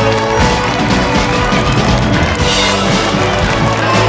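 Loud music with a steady beat.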